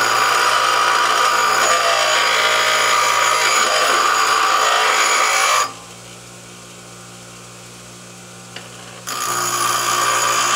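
Ryobi bench grinder wheel grinding the vanadium-coated end of a steel socket, a loud harsh grinding. A little over halfway through the socket is lifted off the wheel and only the grinder motor's quiet hum is left, then the grinding starts again near the end.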